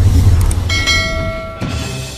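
Editing sound effects for a subscribe-button animation: a deep rumbling whoosh for the transition, then a bright bell ding a little under a second in that rings for about a second.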